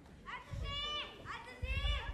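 Two high-pitched vocal calls, each about half a second long and bending up then down, with a low thud near the end.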